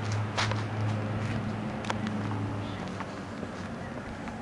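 A few scattered light clicks and scuffs of footsteps on concrete, over a low steady hum that fades out about halfway through.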